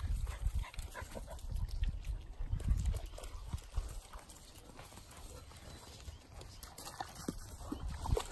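Dogs padding and scuffling about on dry leaves and twigs, making scattered small taps and rustles. A low rumble on the microphone fills the first few seconds, then the sound drops quieter.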